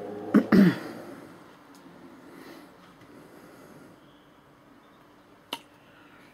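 Bicycle brake lever snapping back with a sharp click, followed at once by a short cough, then quiet room tone broken by one more click near the end.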